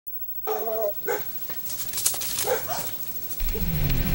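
A dog barking: one longer, wavering bark, then three short barks. Music with a low held note comes in near the end.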